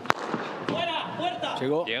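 A single sharp crack of a padel racket striking the ball just after the start, followed by a man's voice talking.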